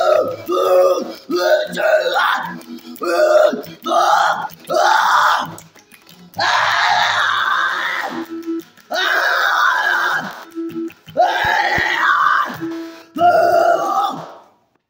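A man singing in short phrases over his own acoustic guitar strumming, with two longer held notes in the middle.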